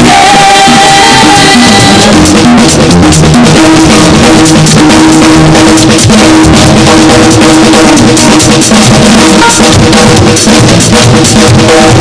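Loud live praise music: a drum kit keeps a steady, driving beat under bass and keyboard. A single note is held in the first second or so before the full band carries on.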